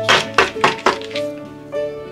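Plastic felt-tip markers knocking together as a bundle of them is handled, four quick knocks in the first second, over steady background music.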